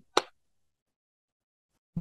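A single short, sharp snap from the hands, a little after the start.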